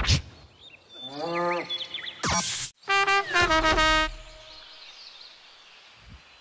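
Short comedy sound effects: an animal-like cry that bends in pitch, a brief burst of noise, then a falling run of stepped musical tones.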